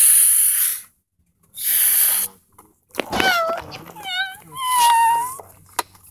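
A person making vocal noises: two breathy hisses, then from about halfway a few short high-pitched cries that fall in pitch and a longer held high tone.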